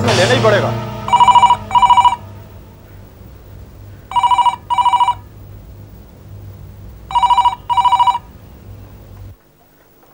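Landline telephone ringing in a double-ring pattern: three pairs of rings, about three seconds apart. A low hum under it stops just before the end.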